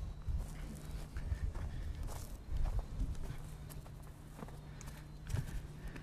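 Footsteps on dry dirt ground: a run of soft, irregular thuds over a low rumble.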